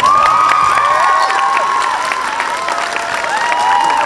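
A crowd of children cheering and shouting with long high "woo" calls, over clapping. It starts suddenly and swells again about three seconds in.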